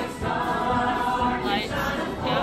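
Musical-theatre cast singing together in chorus, with several voices holding notes in vibrato near the end.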